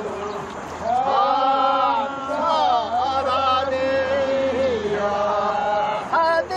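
Chanted singing in long, drawn-out notes that slide and bend in pitch, taking up again about a second in after a brief dip, as in a traditional rice-planting work song.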